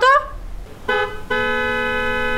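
Electronic doorbell ringing: a short steady tone about a second in, then after a brief gap a longer, lower steady tone, announcing visitors at the door.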